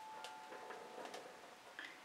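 Quiet room with a few faint, irregularly spaced ticks and light clicks of handling at a work table. A thin steady high whine stops about a second in.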